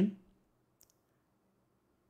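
Room tone with a faint low hum and a single faint, short click just under a second in.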